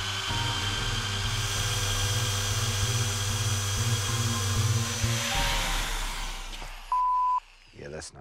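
Corded electric drill boring into a steel safe, its motor running steadily under load and then winding down about five seconds in. A short flat beep sounds near the end.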